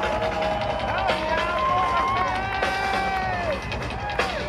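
Concert crowd cheering, with several voices holding long 'woo' shouts that slide up and down over one another, above a steady low background.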